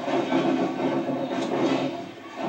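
Crowd noise in a large hall: many voices at once making a steady din.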